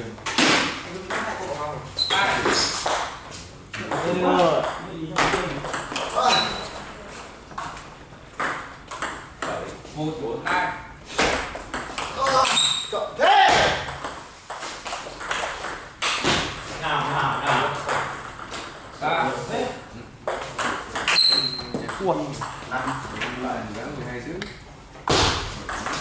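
Table tennis ball being hit by bats and bouncing on the table, sharp clicks at irregular intervals, with people talking throughout.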